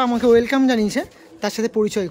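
Speech only: a person talking in Bengali, with a short pause near the middle.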